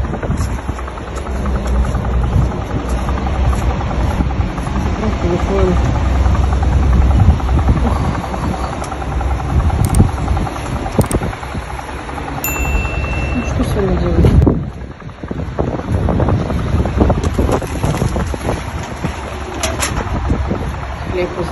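Forecourt background: a vehicle engine running with a steady low rumble under indistinct voices. A short beep comes about two-thirds of the way in.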